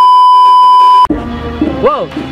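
A loud, steady, high test-tone beep, the kind laid over TV colour bars. It cuts off suddenly about a second in, and background music takes over.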